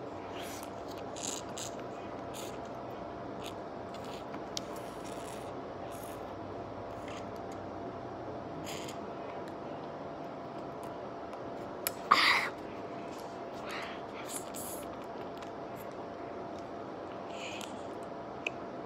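Faint mouth and plastic-wrapper noises as a child bites and sucks at a plastic fruit-jelly pouch held to her mouth: scattered small clicks and rustles over a steady low room hum, with one louder, short noisy sound about twelve seconds in.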